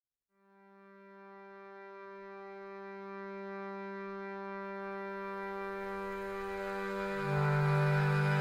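Instrumental opening of a folk song: a single held drone note with rich overtones fades in and swells slowly, and a louder, lower held note joins just after seven seconds.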